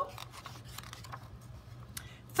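A page of a paperback picture book being turned by hand: faint rubbing and rustling of paper, with a small tick near the end.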